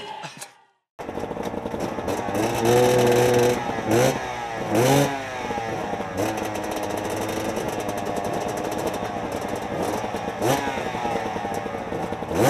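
Enduro dirt bike engine close to the rider, idling with quick throttle blips in the first half and another blip near the end, otherwise running steadily.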